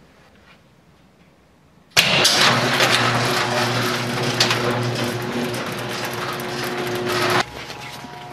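Garage door opener starting with a sharp click about two seconds in, then its motor running with a steady hum while the door rattles up its tracks. It stops about five seconds later.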